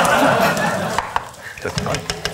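Brown sugar and honey, with a cinnamon stick and star anise, bubbling and sizzling in a stainless steel pan. The sizzle is loudest for about the first second, then dies down, with low voices underneath.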